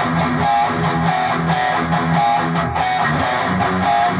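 Distorted Keipro electric guitar playing a palm-muted pedal-point riff: steady chugs of about five or six picks a second on a low E-string note, with notes on the A string that squeal out as pinch harmonics.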